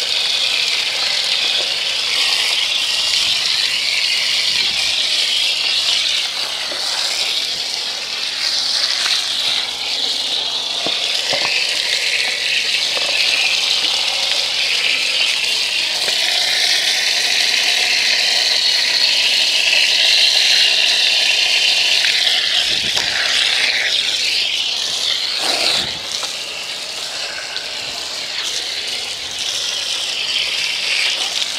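Garden hose spray nozzle shooting a jet of water onto a dirt bike's front wheel and fender, a steady hiss and spatter as it knocks off caked-on mud. The spray shifts and drops a little in level about 26 seconds in.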